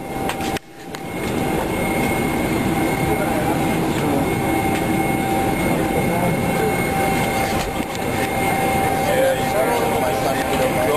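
Steady airliner cabin noise: a dense hum with a couple of steady tones running through it, with murmuring voices mixed in. The sound drops out briefly just under a second in.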